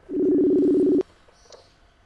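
Telephone line tone: a single steady beep of two close pitches, lasting about a second, as a call to the guest connects.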